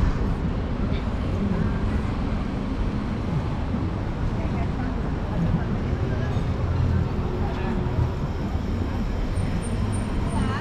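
Steady low rumble of city traffic, with a bus engine among it, and faint voices of passers-by.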